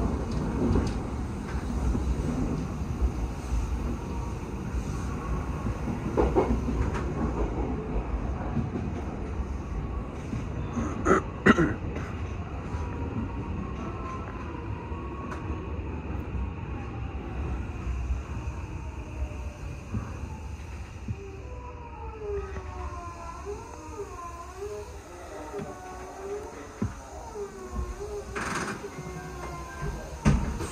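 Odakyu 1000-series electric train running on the line, heard from inside the cab: a steady low rumble of wheels and traction equipment, with a few sharp clacks over rail joints or points about eleven seconds in. Near the end a wavering whine rises and falls over the rumble.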